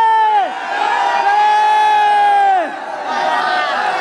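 A man's voice holding a long shouted "Jai" of a devotional chant on one steady pitch, twice: the first note ends about half a second in, and the second lasts from about a second in to nearly three seconds, falling away at its end. Crowd voices can be heard around it.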